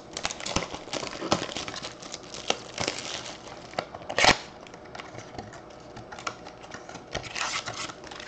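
Cellophane wrap being peeled and crinkled off a small cardboard trading-card box (2019 Bowman Sterling), with scattered light clicks and taps of the cardboard as it is handled and opened. One louder rip or crackle about four seconds in.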